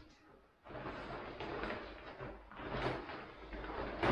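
Rustling and crinkling of a large woven plastic bag being rummaged through and opened, setting in under a second in and rising and falling irregularly.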